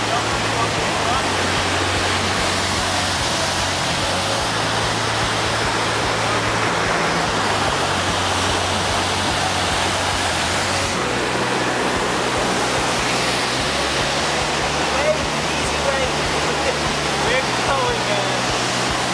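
Steady rush of white water tumbling over boulders in a mountain river.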